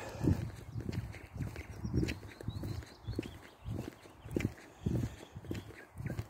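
Footsteps of a person walking at an even pace, heard as dull thuds about twice a second.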